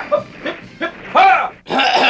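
Drill sergeant's voice barking marching cadence as nonsense syllables, 'hip', 'hee', 'haw', in a rapid string of short calls, the loudest ones near the start, a little past halfway and at the end.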